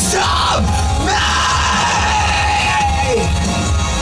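Loud rock music with yelled vocal cries: a few short sliding shouts in the first second and another about three seconds in, over a steady heavy bass.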